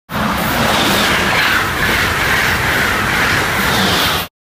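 Amtrak Acela Express high-speed trainset passing close at speed: a loud, steady rush of wind and wheels on the rails.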